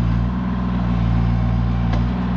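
Bobcat E35 mini excavator's diesel engine running steadily while its arm and bucket dig a ditch.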